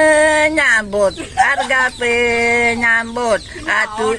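A person singing unaccompanied: slow, long held notes, each sliding down in pitch at its end, with a brief broken phrase in between.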